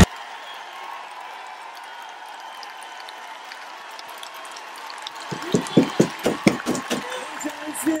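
A man's voice holding a high sung note, heard faintly through a playback over a light hiss. From about five seconds in, a run of short gasps and exclamations from a listener joins it.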